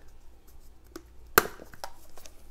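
Kitchen items handled on a countertop: a few faint ticks and one sharp knock about one and a half seconds in.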